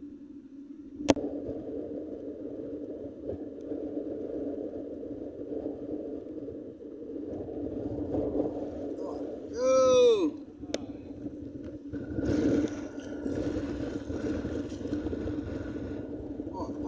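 Steady outdoor wind and water noise with a sharp click about a second in, a short shout from a man around ten seconds in, and louder rustling handling noise near the end.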